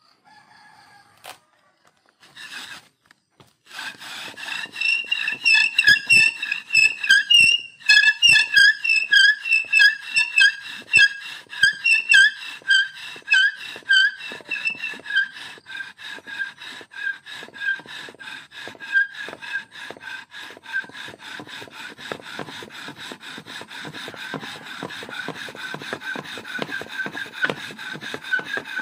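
Bow drill: a wooden spindle squealing in the fire board's socket as the bow is sawed back and forth, a rhythmic squeak with every stroke starting about four seconds in. The strokes are loudest in the first half, then quicker and more even. The friction is heating the wood dust enough to smoke.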